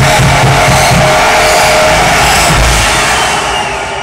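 Loud electronic dance music played live by DJs over a club sound system, with a pulsing, chopped bass line in the first half that thins out near the end.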